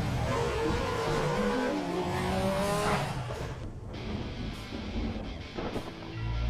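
Logo-intro sound effects over music: a dense rushing wash with several sliding tones in the first three seconds, then quieter with a few short hits near the end.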